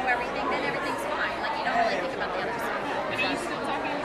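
Chatter of many overlapping voices in a crowded hall, with no single speaker standing out.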